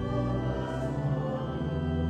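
Church choir singing in long held chords with pipe organ accompaniment, a new chord coming in right at the start.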